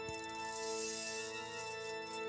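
Organ holding a sustained chord, joined right at the start by a bright metallic jingling shimmer, like a shaken cluster of small bells, that fades over about two seconds. A soft low thud sounds as the jingling begins.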